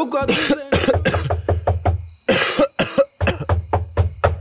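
A person coughing hard and repeatedly: two heavy coughing bursts about two seconds apart, with shorter hacking coughs and throat sounds between them, the sick cough of an ill character in a radio drama.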